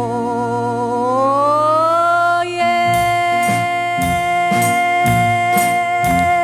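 A woman's voice holds one long sung note with vibrato, then glides up to a higher note about a second in and sustains it steadily. Band accompaniment with guitar comes in under it about halfway, on a steady beat about twice a second.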